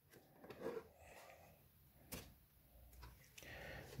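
Near silence, with faint handling sounds of the thick cardboard pages of a box-set folder: a small tick about two seconds in and a soft rustle near the end as a page is turned.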